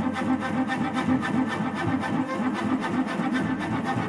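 Solo cello bowed in rapid, evenly repeated strokes, about six a second, a steady driving figure in the instrument's low-middle range.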